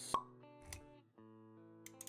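Intro music of sustained chords with a sharp pop sound effect just after the start and a softer low thud shortly after, then a new chord comes in about halfway through.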